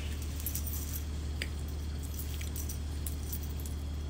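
Soft rustling with scattered light clicks as long box braids are handled and twisted up into a bun, over a steady low hum.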